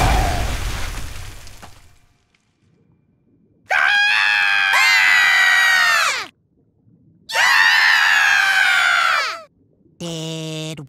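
Two long cartoon screams, each lasting about two seconds and sliding down in pitch as it ends, with a short silence between them. Before them, a noisy sound fades out over the first two seconds.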